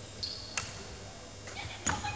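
Badminton rally: two sharp racket strikes on the shuttlecock, about half a second in and again, louder, near the end, with brief shoe squeaks on the wooden court floor.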